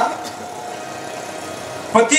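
Steady background hum and hiss. The last sung note's echo fades out in the first moment.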